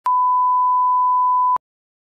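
Steady line-up test tone played with colour bars: one pure, unwavering beep lasting about a second and a half, which starts and cuts off with a click.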